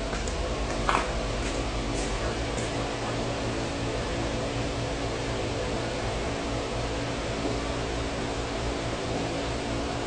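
Steady mechanical hum with hiss, from a running machine such as a fan or air-conditioning unit, in an empty room. A few light knocks and clicks come in the first three seconds, the clearest about a second in.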